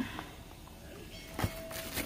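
Quiet room with a single sharp click about one and a half seconds in, from plastic meal packaging being handled on a tray. A faint steady tone starts shortly before the end.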